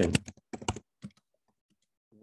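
Computer keyboard typing: a short run of keystrokes about half a second in, another around the one-second mark, then a few faint taps.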